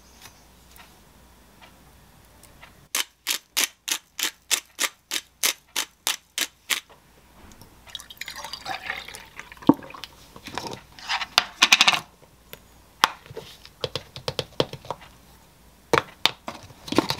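A pepper mill ground in a run of about fifteen sharp crunching clicks, some four a second. Then liquid is poured into a tall glass tumbler, followed by a few light knocks as a plastic scoop is used at the glass.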